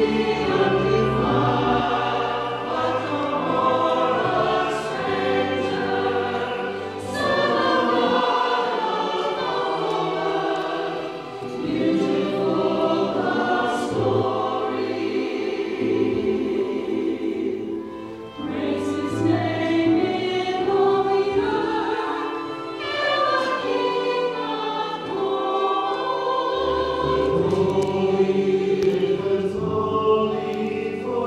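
Mixed church choir of men's and women's voices singing, with brief dips between phrases.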